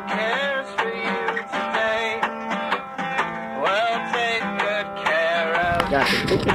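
Background music: a song with plucked strings and a melody line that slides up and down in pitch.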